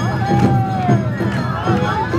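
Awa Odori festival music played live by the dance group's band, with a steady two-beat rhythm from drums and bell, and a long held note that falls slightly in the first second.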